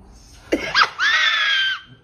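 A man's voice swoops sharply upward into a high falsetto shriek, then holds a high, screeching note for nearly a second before cutting off, a strained attempt at a high sung note.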